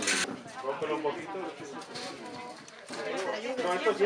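Indistinct speech, several people talking over one another, with a short hiss at the very start.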